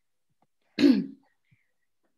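A person clearing their throat once, briefly, about a second in, heard over a video call's audio.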